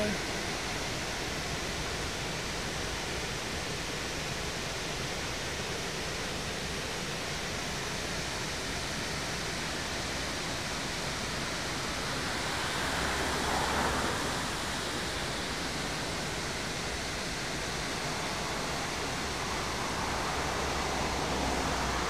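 River water pouring over a weir, a steady rushing, with a brief swell a little past halfway.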